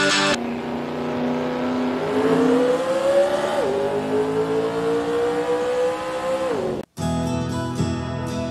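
Car engine accelerating through the gears: it holds a steady note, then rises in pitch, drops sharply at a gear change about three and a half seconds in, and rises again before falling away just before 7 seconds. Music returns after a brief break near the end.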